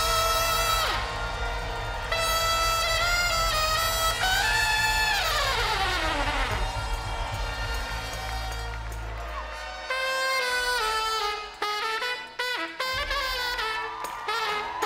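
Trumpet and other brass playing long held notes over a low steady drone, with one long falling glide about five seconds in. The drone drops out about nine seconds in, and the brass goes on in shorter, separate notes.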